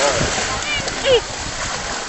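Shallow sea water splashing and lapping, under a steady rush of waves. Brief voices sound over it, the loudest a short falling cry about a second in.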